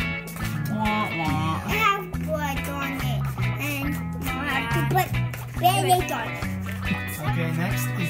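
Background music with a bass line of held low notes, with voices talking over it.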